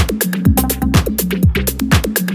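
Minimal deep tech electronic dance track: a steady four-on-the-floor kick drum about twice a second, with quick hi-hat ticks between the beats and a sustained bass line.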